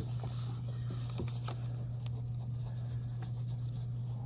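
Faint rustling and rubbing of paper as a hand presses a folded index-card tab onto a notebook page, with a few soft taps, over a steady low hum.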